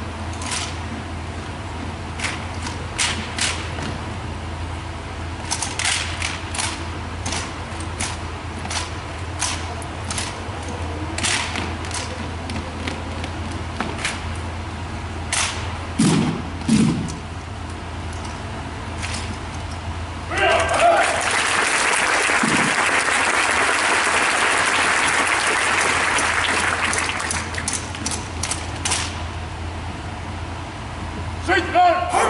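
Rifle drill handling: a string of sharp slaps and clicks as hands strike the rifles in unison, with two heavy thuds about 16 s in. Around 20 s in a shout rings out and the audience applauds and cheers for about six seconds, then the rifle slaps resume.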